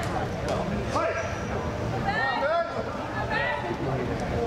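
Indistinct talk from people in a large hall, no words clearly made out, with a voice rising and falling most strongly in the middle of the stretch.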